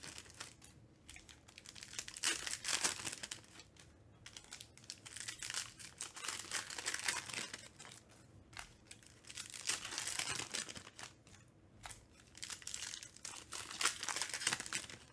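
Foil trading-card pack wrappers being torn open and crinkled by hand. The crinkling comes in bursts every few seconds, with quieter handling between them.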